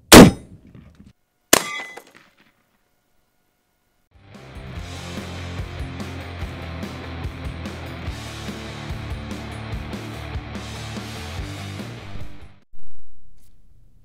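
A single shot from a Mosin-Nagant rifle firing a 7.62x54R PZ round. About a second later comes a sharp metallic ding as the bullet strikes the steel plate low, having missed the can. Background music follows for about eight seconds, with a short swell near the end.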